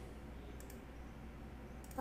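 Faint clicks and handling noise of a mobile phone being repositioned and propped up against a book, heard over a video call: a couple of brief clicks, the last just before the end, over a low hum.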